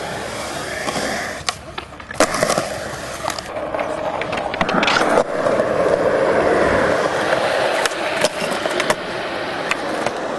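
Skateboard wheels rolling over concrete in a steady rush, broken by several sharp clacks of the board, the loudest about two seconds in.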